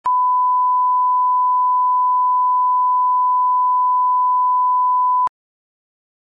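Television colour-bar reference tone: a single steady 1 kHz test tone that cuts off suddenly a little over five seconds in.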